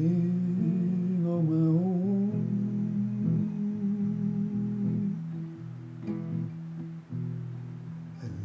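Acoustic guitar strummed slowly while a man sings, holding a wavering note for the first couple of seconds. The guitar's chords then ring on alone.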